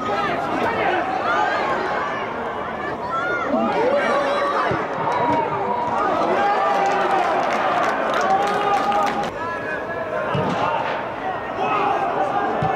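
Footballers shouting and calling to each other during play, several voices overlapping, with a few short sharp knocks around the middle.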